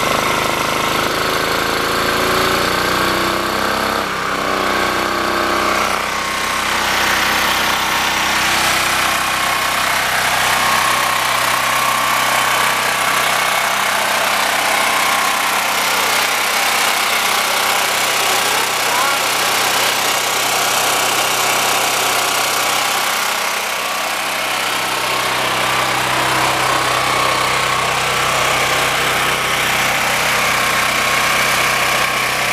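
A portable gasoline generator's engine running on charcoal wood gas (producer gas) from a gasifier, with a steady, even hum that marks a stable run on the gas. Its note shifts during the first few seconds, then holds steady.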